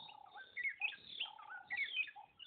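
Birds chirping: a string of short, quick chirps with brief held notes between them, fairly faint.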